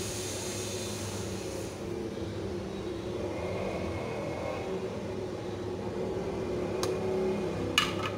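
A steady low mechanical hum, like a motor or fan running, with two sharp clicks near the end.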